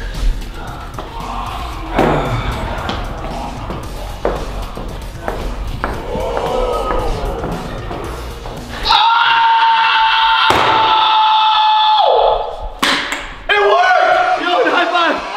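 Background music with scattered knocks and thumps. About nine seconds in, a handheld air horn gives a loud, steady blast of about three seconds, which drops in pitch just before it stops.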